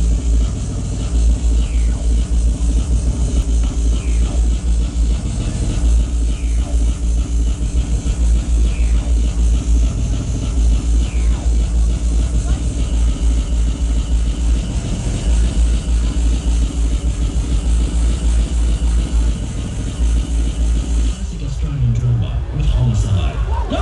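Hardcore techno played loud over a festival sound system and heard from within the crowd, driven by a rapid, unbroken kick drum that fills the low end.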